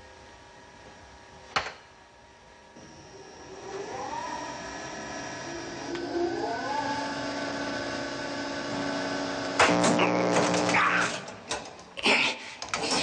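Shock-generator sound effect: a switch clicks, then an electric whine starts up and rises in pitch in two glides as the voltage lever is pushed up. A loud buzzing burst cuts in near the end as the shock is delivered.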